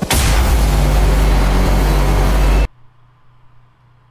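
Explosion-style sound effect in an edited video: a sudden, loud blast of noise with a deep rumble that holds for about two and a half seconds and then cuts off abruptly, leaving a faint low hum.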